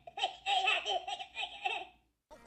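High-pitched, cartoonish Minion-voice laughter in quick bursts, played by the Despicable Me 4 Transformation Chamber toy's electronic sound feature. It cuts off abruptly at the end.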